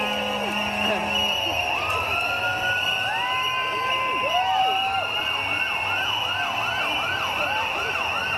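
Siren wails over a steady crowd din: several long rising-and-falling glides at different pitches, then a fast yelping wail of about two cycles a second through the second half.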